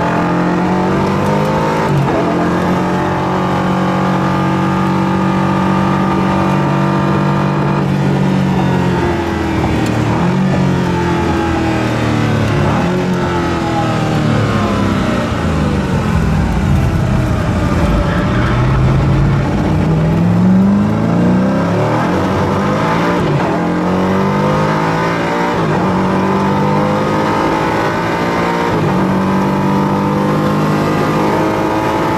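Koenigsegg Agera RS's twin-turbo V8, heard from inside the cabin. It holds a steady note for the first several seconds, then falls in pitch as the car slows. Around the middle it climbs in a few rising sweeps through the gears under acceleration, then settles back to a steady note.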